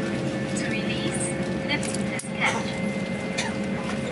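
Steady hum inside an Airbus A350 airliner cabin, with faint, indistinct voices over it.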